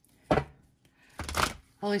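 Tarot cards being shuffled by hand: a sharp slap of cards about a third of a second in, then a longer swish of cards around a second and a half in.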